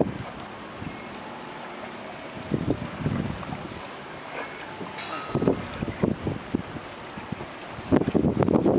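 Wind buffeting the microphone in low rumbling gusts, once a few seconds in and again through the second half, over a steady rush of wind and choppy lake water.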